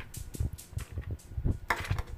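Vodka poured from a plastic measuring cup over ice cubes in a plastic blender jar, with irregular clicks and knocks of ice and plastic, the loudest one near the end.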